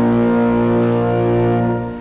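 Church organ playing a slow prelude: a sustained chord, held steady, that falls away at the very end as the harmony changes.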